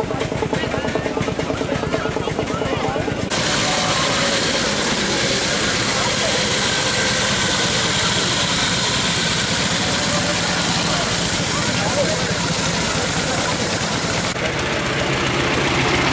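Veteran car engines running at a standstill, with a rapid ticking beat, under the chatter of a crowd. The sound shifts abruptly a few seconds in and again near the end.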